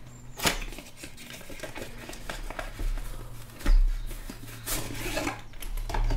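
Cardboard product box being handled and opened, its inner tray sliding out with soft scraping and rustling. Two sharp knocks come about half a second in and near the middle, the second the louder. A steady low hum sits underneath.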